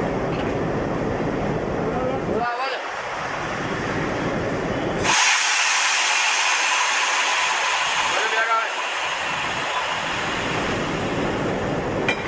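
A sudden loud hiss of compressed air starting about five seconds in and lasting about three and a half seconds, from the air brake hoses being connected between a WDM3A diesel locomotive and a passenger coach. A low, steady rumble runs before and after the hiss.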